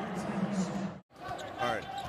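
Basketball game sound with a commentator's voice: the ball bouncing on the court and arena noise under a held vocal sound. It drops out abruptly to silence for an instant about halfway, then the game noise and voices resume.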